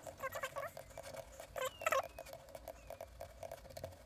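Computer mouse scroll wheel ticking rapidly as it is turned to zoom the view, many ticks a second, with two brief louder pitched sounds near the start and about a second and a half in.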